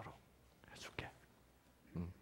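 Mostly quiet room tone with a short soft breath close to a headset microphone, followed by a sharp click about a second in.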